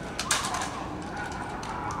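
Guards' rifles being brought up in unison during a drill movement: a sharp clatter of hands and rifle parts about a quarter second in, followed by a few lighter clicks.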